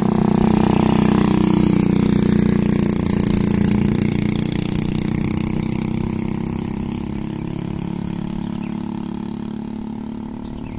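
Motorcycle engine passing close by, loudest about a second in, then fading steadily as the bike rides away.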